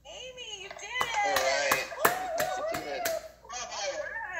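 Several voices exclaiming, with a quick run of hand claps through the middle.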